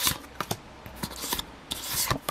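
Pokémon trading cards sliding against each other as the front card is pulled off the stack and tucked behind: several short, dry rubbing swishes.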